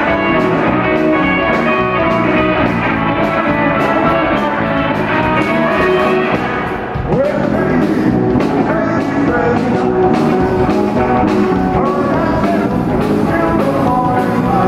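Live rock and roll band playing: electric guitars, electric bass and drum kit with a steady beat, with singing. The level dips briefly about seven seconds in.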